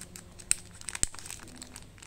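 Small clear plastic bag being pulled open by hand: steady crinkling, with two sharp clicks about half a second and a second in.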